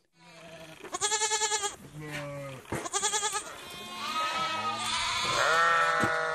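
A flock of goats and sheep bleating: single wavering bleats about one and three seconds in, then several overlapping calls near the end.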